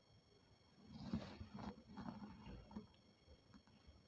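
Faint handling noise of a perfume bottle being readied for spraying: soft rustling and a few light knocks between about one and three seconds in, otherwise near silence.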